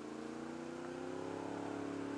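Honda VFR800 Interceptor's V4 engine pulling steadily under acceleration, its note rising slowly as the revs climb, fairly quiet as heard from the rider's helmet.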